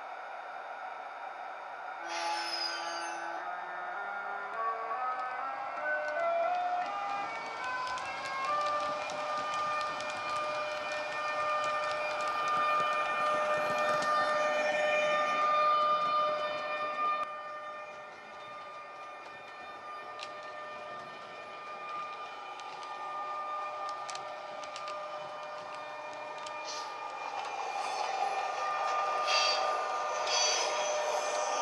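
Sound decoder in a model ÖBB Taurus electric locomotive playing the Taurus traction sound as the train pulls away. A stepped, rising scale of tones starts about two seconds in and settles into a steady whine, which drops away about halfway through. Toward the end, running noise and clicks from the model train grow louder as it comes past.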